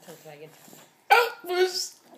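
A toddler vocalizing: faint babble, then two loud, high-pitched squeals about a second in, the second rising at its end.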